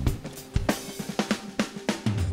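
Drum-led background music: a string of sharp drum and cymbal hits with little else under them.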